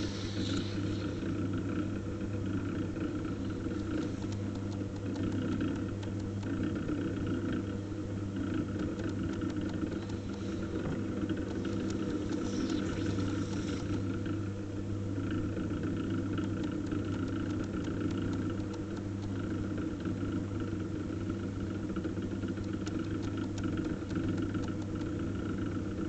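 Pottery wheel motor humming steadily as the wheel spins a wet-clay bowl being thrown.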